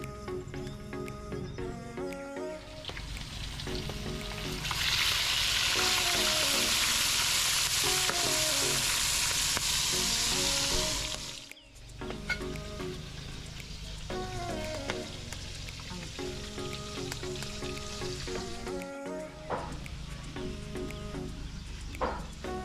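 Loud sizzling of fish cooking, running for about six seconds from about five seconds in, over background music with a repeating melody.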